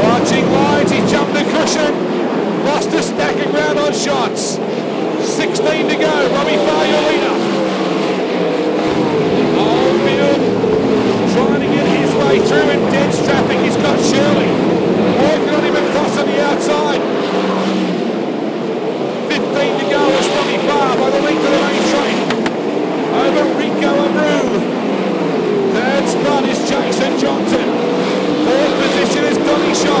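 A pack of winged sprint cars racing on a dirt oval, several V8 engines at full throttle at once, their overlapping pitches rising and falling as cars pass.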